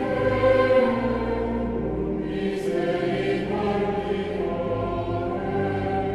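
Choir singing slow, sustained chords as background music, the voices holding each chord before moving to the next.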